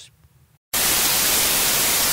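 Television static sound effect: a steady white-noise hiss that cuts in suddenly about two-thirds of a second in.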